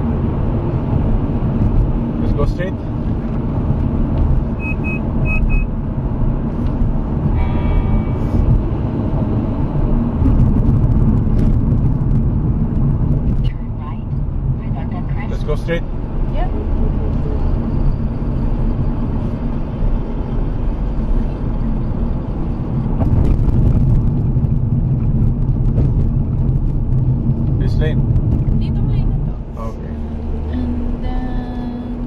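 Car driving at highway speed, its engine and tyre rumble heard from inside the cabin as a steady low drone.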